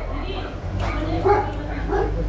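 A dog barking in two short yelps about a second in.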